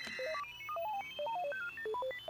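Dial-up modem connecting: a rapid run of short electronic beeps jumping up and down in pitch, with a faint high tone slowly rising above them.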